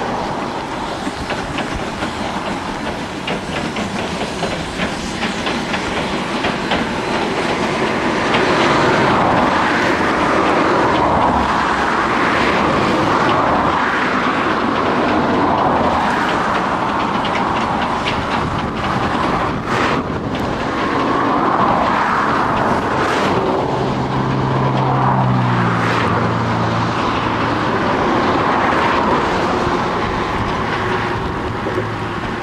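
Steam-hauled passenger train rolling past, its wheels clicking over the rail joints in a steady run of clickety-clack that swells about every two seconds as each carriage goes by.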